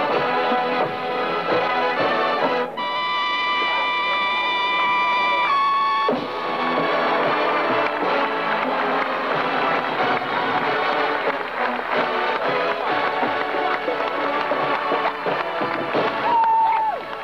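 Drum and bugle corps playing: brass bugles and drums together. A long held brass chord runs from about three seconds in to about five and a half seconds, followed by busier playing with drum strokes.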